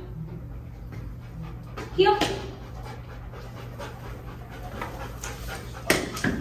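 Young golden retriever panting in short, evenly repeated breaths. A single short spoken word comes about two seconds in, and there is a sharp click just before the end.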